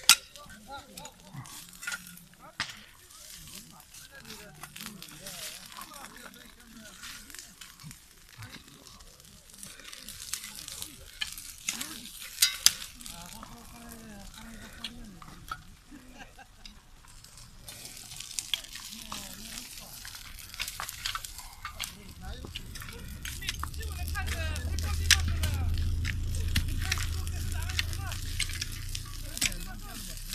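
Crackling and snapping of a burning pile of cut brush, with scattered sharp pops under distant voices. A low rumble builds through the last third.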